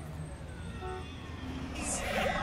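A quiet sound-effect passage in an electronic track: slow falling tones over a steady low hum, like a passing vehicle. A short high whoosh comes near the end as the music starts to return.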